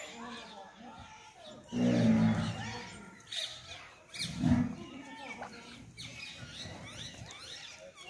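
Cattle giving a low call twice: a longer steady one about two seconds in and a shorter one near the middle. Small birds chirp throughout.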